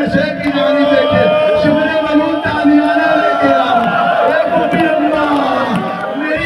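A man's voice through microphones, reciting in a long-drawn, wavering, chant-like delivery rather than plain talk. Other voices of the gathering sound with it.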